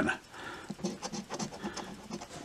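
Coin scraping the latex coating off a scratch-off lottery ticket, a faint, irregular rasping.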